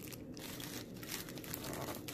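A clear plastic treat bag wrapped around an Oreo pop crinkling and crackling irregularly as the wrapped pop is handled and pushed into floral foam.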